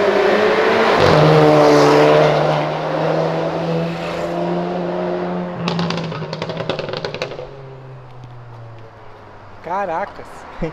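Tuned Stage 3 VW Jetta TSI turbo engine accelerating hard down the street, its loud engine note holding high, then sinking in pitch and fading as it pulls away. A rapid run of sharp exhaust crackles comes about six to seven seconds in.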